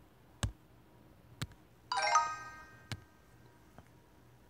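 Khan Academy's correct-answer chime: a bright, bell-like chord about two seconds in that rings and dies away over about a second, marking a correct answer. A few light clicks come before and after it.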